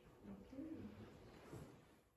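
Near silence with a faint, low murmur of a voice off the microphone.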